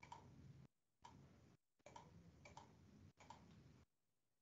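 Near silence, with a few faint, irregular clicks over low room noise that cuts in and out.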